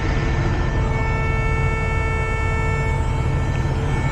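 Semi-truck's diesel engine running steadily as the tractor pulls slowly forward in low gear, heard from inside the cab: a low rumble with a steady hum of higher tones.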